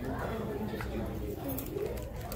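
Indistinct talking in the background, a voice or voices too faint or muffled to make out words.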